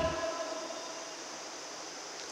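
A pause in a man's speech: the echo of his last word dies away in the hall, leaving a faint, steady hum of room noise.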